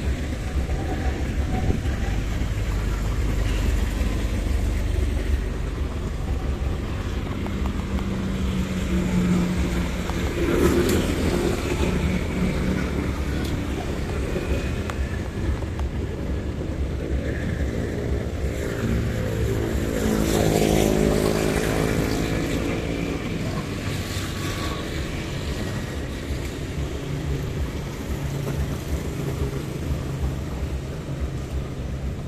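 City street traffic of cars and motorcycles passing, a continuous engine rumble. A louder engine passes close about two-thirds of the way through, its pitch rising and then falling as it goes by.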